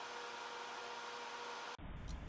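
Faint steady hiss of room tone with a light electrical hum while the rocket sits waiting. Near the end the sound cuts out abruptly and is replaced by a different, low rumbling background.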